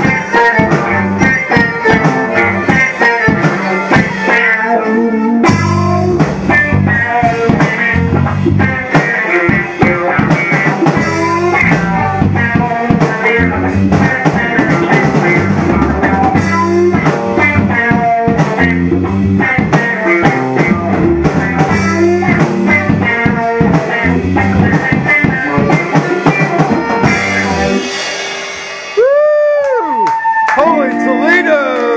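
Music with drums and guitar playing at a steady beat. Near the end the drums and bass drop out and a single sliding note rises and then holds.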